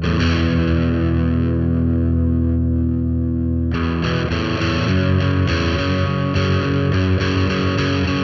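Distorted electric guitar through an amp. An E power chord is struck and left ringing for about three and a half seconds, then strummed in a steady rhythm that moves to an F-sharp chord.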